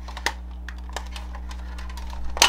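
A few light, sharp clicks and taps over a steady low electrical hum.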